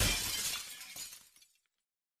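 A single sudden crash with a noisy, glassy tail that fades out over about a second and a half.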